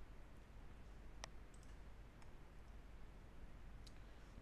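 Near silence broken by a computer mouse click about a second in, with a couple of fainter clicks later, one near the end.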